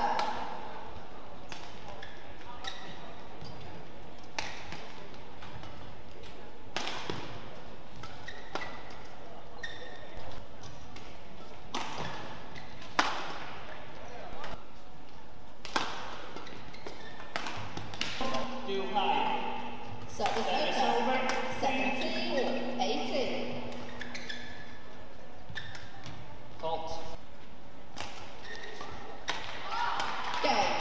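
Badminton rackets striking a shuttlecock in rallies: sharp, single hits spaced irregularly about a second or more apart. Crowd voices shout and cheer for a few seconds just past the middle.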